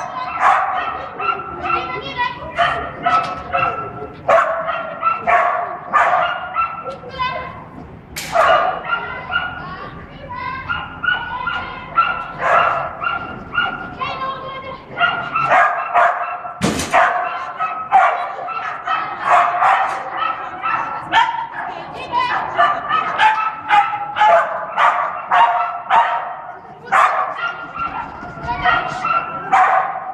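A kelpie barking excitedly during an agility run, short high-pitched barks in rapid volleys almost without pause.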